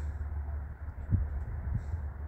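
Steady low outdoor background rumble with a faint soft knock about a second in.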